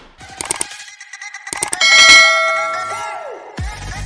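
Channel intro sting: a run of quick clicks, then a loud, bright bell-like chime about two seconds in that rings and fades, a falling tone, and a deep bass hit near the end as the intro music kicks in.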